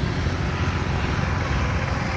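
Road traffic noise: a steady low rumble with no distinct events.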